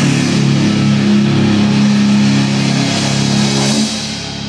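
Loud live rock band: electric guitar and bass holding a low chord over drums and cymbals, the chord cutting off just before the end.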